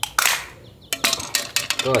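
Metal garden tools being handled on stone paving: a short scraping rush near the start, then several sharp metallic clinks about a second in.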